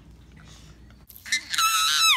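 Baby's loud, high-pitched squeal starting about a second and a half in, after a faint stretch.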